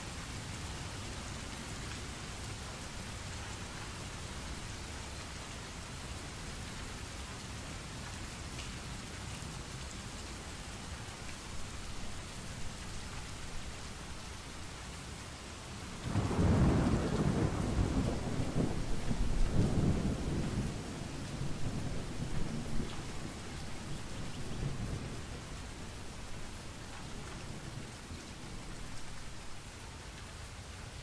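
Steady rain, with a loud rumble of thunder that breaks in suddenly about halfway through and rolls away over several seconds.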